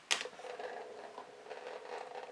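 A knock, then a faint steady rubbing as a painted canvas on its stand is turned around on the work table.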